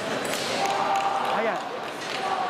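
Busy fencing-hall din of crowd chatter, with a steady two-note electronic scoring-machine tone sounding for about a second.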